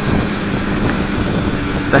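Yamaha Fazer 250 single-cylinder engine running steadily at an even, light throttle while riding, mixed with wind noise.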